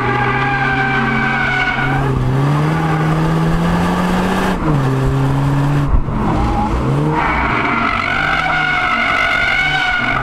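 BMW 2 Series Coupe's engine and exhaust, heard through a microphone at the exhaust, pulling hard in a drift. The revs climb, then drop sharply about halfway through at a gear change. The tyres squeal at the start and again in the last few seconds.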